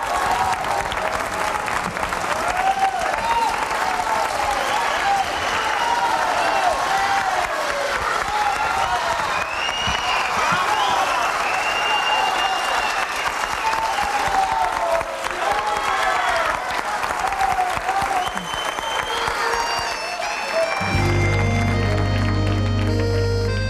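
Studio audience applauding, with voices calling out over the clapping. About a second before the end the band starts the instrumental intro of the song.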